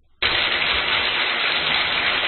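A loud, steady hiss-like noise that starts abruptly a fraction of a second in and holds level, with no pitch or rhythm in it.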